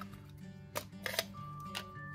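Background music with a few sharp clicks and knocks of a small metal watercolour palette tin being opened and handled on a desk, the loudest about a second in.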